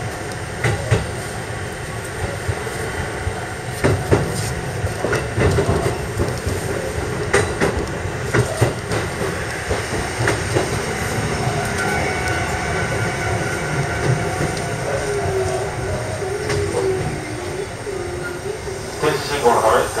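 Kotoden electric train running slowly, heard from inside the cab: wheels clicking over rail joints, then a wavering squeal from the wheels on the curve into the station in the second half.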